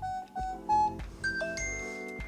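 Samsung Galaxy Watch Active2 playing its water-ejection sound after water lock is switched off: a run of short steady electronic tones at changing pitches, over soft background music.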